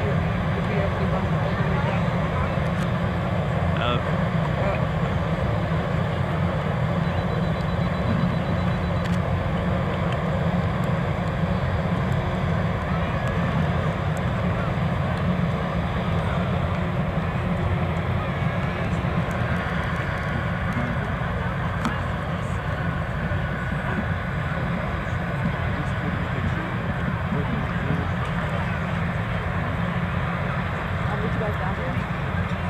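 NASA crawler-transporter's diesel engines running under load as it carries the SLS rocket, a steady low drone that holds even throughout.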